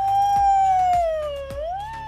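A woman's long, exaggerated mock-crying wail, held high and then sliding down and back up in pitch near the end, over background music with a steady beat.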